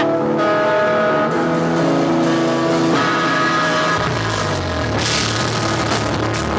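Live rock band: electric guitars ring out held, melodic notes that change about once a second. About four seconds in the bass and drums come in, with a cymbal crash a second later.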